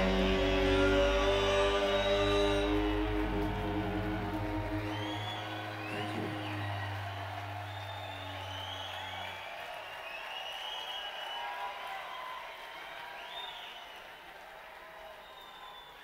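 A rock band's final chord on electric guitars and bass rings out and fades over the first several seconds, its low note dying away about halfway through. The crowd then cheers with whistles and whoops, growing fainter toward the end.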